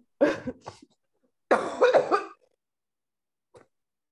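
A woman's two short, breathy vocal outbursts without words, about a quarter second in and again around a second and a half in, then a faint click near the end.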